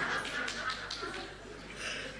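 Live audience laughter and clapping dying away after a punchline, with a short burst of noise near the end.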